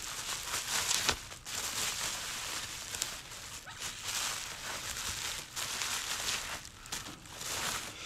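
Plastic bubble wrap rustling and crinkling as it is unwound by hand, going on with a few brief pauses.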